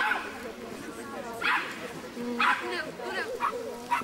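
Small dog barking, four sharp barks about a second apart, over background chatter.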